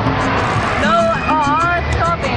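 A high voice with a wavering, sliding pitch, starting about a second in, over a steady low rumble and background music.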